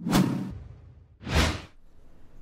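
Two whoosh sound effects of a logo intro sting. The first starts sharply with a low thump and fades over about half a second. About a second later a second whoosh swells up and dies away.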